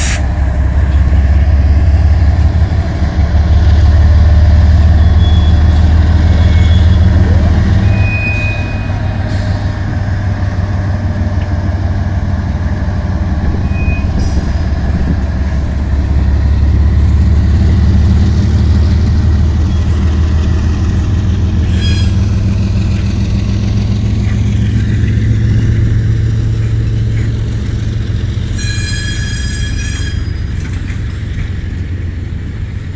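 Diesel locomotives of a freight train passing close by, their engines a loud steady low rumble, strongest in the first third and then easing as the freight cars roll past. A few short high squeals sound, the clearest near the end.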